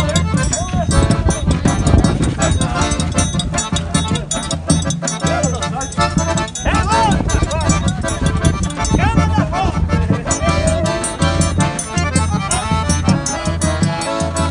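Piano accordion playing a lively forró tune, with a steady repeating bass line under the melody.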